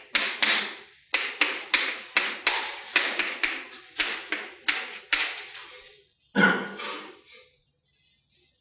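Chalk writing on a blackboard: a quick run of sharp taps and short scrapes, about two or three a second, as the strokes of Chinese characters are drawn. It stops after about six seconds, followed by one longer, rougher sound.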